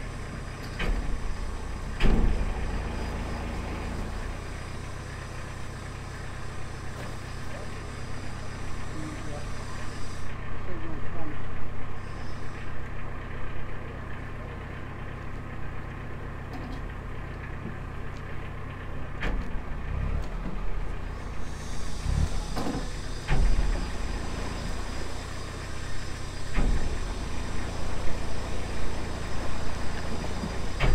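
Narrowboat's inboard diesel engine running steadily at low cruising speed, with a few brief low thumps now and then.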